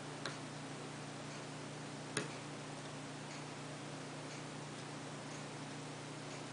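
Faint, even ticking about once a second, with a sharper click just after the start and a louder one about two seconds in, over a steady low hum.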